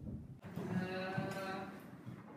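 A person's voice holding one drawn-out vowel for about a second and a half, steady in pitch with a slight waver, like a long hesitant "uhh".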